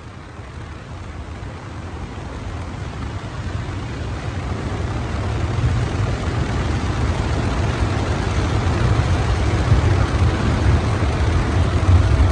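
A vehicle driving through a road tunnel: a steady low rumble of engine and tyre noise that grows steadily louder.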